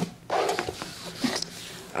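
A brief murmur of a girl's voice, with a few light clicks from a plastic action figure being handled and its joints turned.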